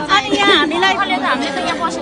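Speech only: people talking in a group, a woman's voice among them.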